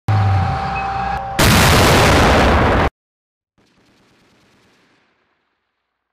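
A loud, distorted burst of automatic gunfire, about three seconds long, that cuts off abruptly.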